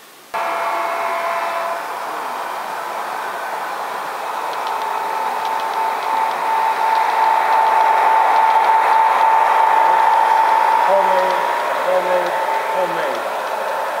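Model train running on the layout track: a steady whirring of motor and wheels on rail with a constant high whine. It starts suddenly, swells louder toward the middle and eases off near the end.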